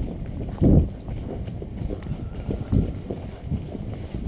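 Thoroughbred horse's hooves striking a leaf-covered dirt trail in an irregular run of low thuds, with one louder thump less than a second in.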